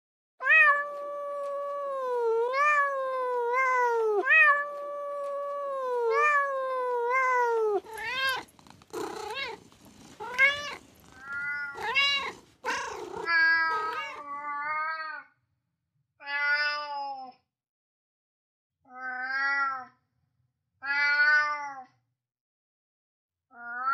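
Domestic cat meowing: one long, drawn-out yowl for the first eight seconds or so, its pitch jumping up and sliding back down again and again, then a run of shorter meows, and in the last part separate meows about a second long with short pauses between.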